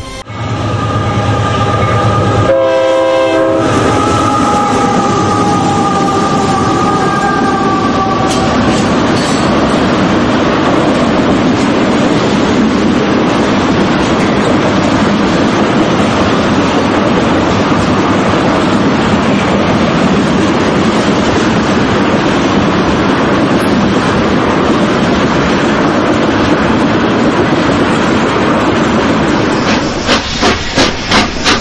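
Train passing on the rails. Its horn sounds for about the first eight seconds, with a brief break near the start, and its pitch sinks slightly as it goes on. After that only the steady rumble of the wagons on the track remains.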